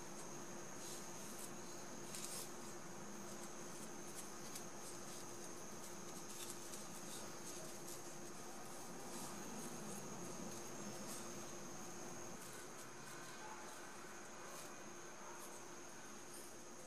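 Faint background with a steady high-pitched whine and a low hum, with soft, scattered rustles of grosgrain ribbon being folded by hand.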